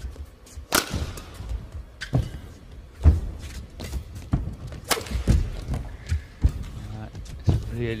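Badminton rally: sharp cracks of rackets striking the shuttlecock every second or two, with low thuds of the players' footwork on the court between shots.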